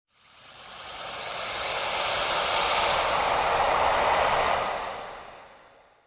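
Logo intro sound effect: a rushing whoosh of noise that swells up over about two seconds, holds, then fades away near the end.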